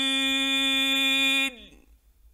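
A male Quran reciter's voice in mujawwad recitation holds one long, steady note to close a verse. About a second and a half in it breaks off, with a brief fall in pitch, and gives way to near silence.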